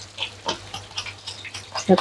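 Egg-battered milkfish frying in a wok of hot oil, crackling with irregular small pops over a steady low hum.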